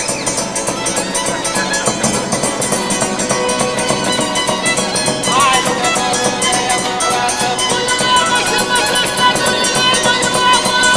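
Maramureș folk music: a fiddle plays sustained, sliding melody notes over a strummed guitar (the zongora) accompaniment.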